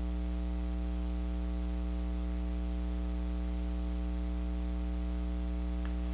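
Steady electrical mains hum, a low buzz with a ladder of overtones and nothing else above it, picked up by a camera running on its mains power adapter.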